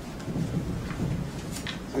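Low, steady rumble of room and microphone noise.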